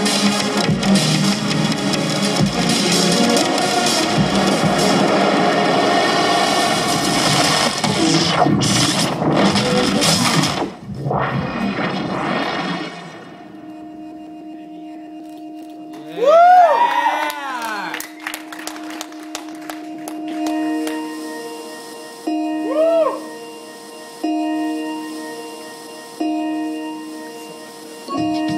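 Live electronic music: a dense, loud beat-driven track that breaks off about 13 seconds in, giving way to a sparse, quieter passage of swooping rising-and-falling pitch glides and a held chord that pulses on and off about every two seconds.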